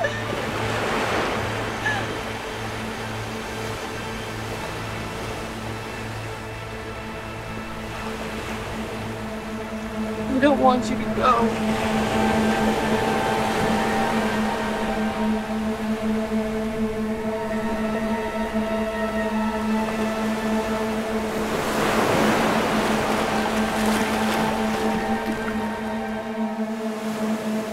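Horror film score: a dark sustained drone of several steady tones, swelling up about a second in and again near the end, with a brief cluster of gliding tones about ten seconds in.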